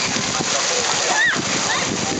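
Water pouring from an overhead spray pipe and splashing steadily into a lazy river, with a brief high voice call about a second in.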